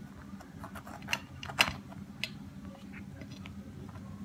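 Slices of fresh-baked pizza pulled apart by hand, the crust giving a few short sharp crackles and clicks, the loudest about a second and a half in, over a low steady hum.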